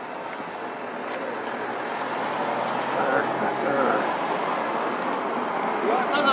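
Steady outdoor background of traffic noise with indistinct voices, slowly growing louder.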